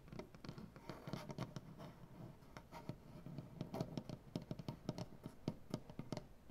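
Long fingernails and fingertips tapping and scratching on a wooden tabletop: quick, irregular taps mixed with scraping strokes of the nails across the wood grain.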